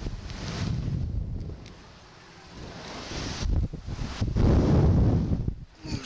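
Wind rushing over the microphone of a camera mounted on a slingshot ride capsule as it swings through the air. The rush is loud at first, drops to a lull about two seconds in, then builds again to its loudest near the end.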